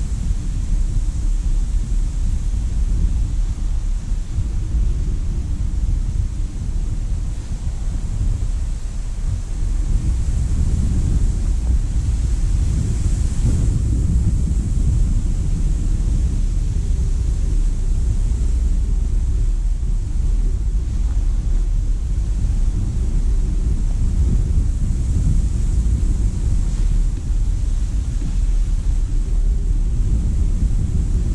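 Strong wind buffeting the camera microphone: a loud, steady low rumble.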